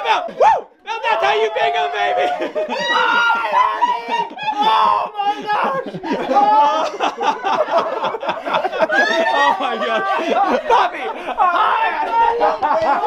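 Several people talking excitedly over one another, with laughter and exclamations. There is a loud cry about half a second in.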